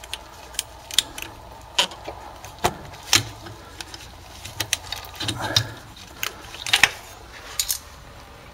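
Irregular sharp metallic clicks and clinks as the governor of a GM 700R4/4L60 automatic transmission is worked out of its bore in the transmission case by hand.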